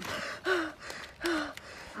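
A woman in labour gasping and breathing hard: a sharp breath at the start, then two short voiced gasps.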